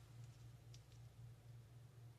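Near silence: a steady low hum of room tone, with a few faint light ticks from fingers peeling and handling a small strip of foam tape.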